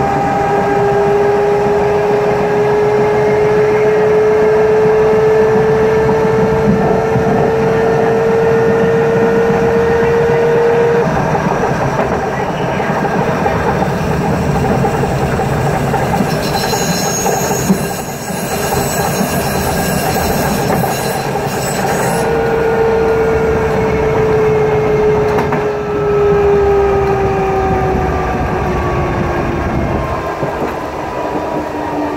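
Electric traction motor of a Budapest HÉV MX/A suburban train whining under power over the steady rumble of wheels on rail. The whine climbs slowly in pitch as the train gathers speed and cuts off about eleven seconds in. It comes back about twenty-two seconds in and falls in pitch as the train slows.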